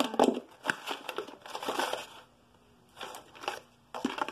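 Small items being handled and shifted around in a desk drawer: a quick run of light clicks, knocks and rustling that eases off about two seconds in, with a few more knocks a second later.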